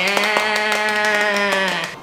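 A long cheer of 'yay' held at one steady pitch for nearly two seconds, with hands clapping through it.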